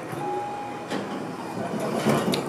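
General Elevator Co. hydraulic passenger elevator arriving: a single steady chime tone lasting about a second, over the rumble of the sliding car and hoistway doors starting to open.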